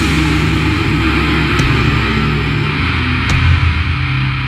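Slow death doom metal: heavily distorted guitars and bass holding low, sustained chords, with two drum strikes under two seconds apart.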